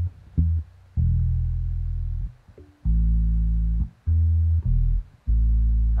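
Bass line from a rumba mix playing back: a string of low bass-guitar notes, several held for about a second, with short gaps between them, being processed through an EQ for its low-end cut.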